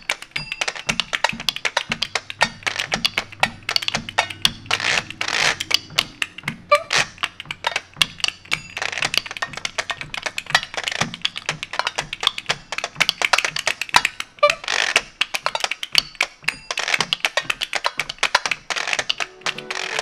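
A percussion duet: a washboard scraped and tapped in a fast, dense rattle of clicks, with a second player clacking hand-held percussion against it and no melody instrument playing.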